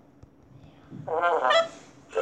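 A high, wavering wordless vocal sound, starting about a second in and lasting under a second, after a moment of near silence.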